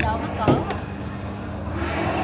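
A short spoken word with a single sharp knock about half a second in, followed by a fainter click. After that there is only the steady hum of a large hall.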